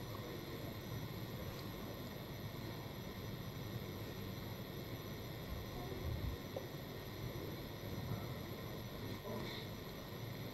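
Faint steady hum and hiss of room tone, with no distinct events.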